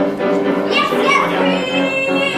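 A group of young voices singing a musical-theatre number together, holding wavering notes, with a higher voice rising out of the group about a second in.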